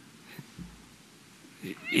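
A pause in a man's speech: quiet room tone with a faint click, then a short vocal sound rising in pitch just before his speech resumes.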